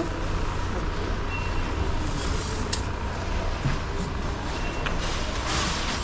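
Steady low hum and hiss of shop background, with whole spice seeds being scooped from a burlap sack with a metal scoop. A brighter rustle near the end as the seeds go into a plastic bag.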